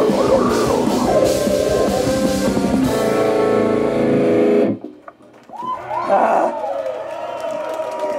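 Heavy metal band playing live with a drum kit and distorted guitars, stopping abruptly a little past halfway. After a brief drop, a held tone rings on with shouted voices over it.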